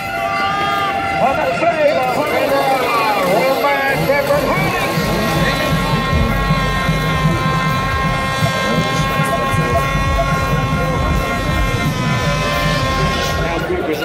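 Motocross motorcycle engines revving, then held at a steady high pitch for several seconds before dropping near the end, over crowd voices.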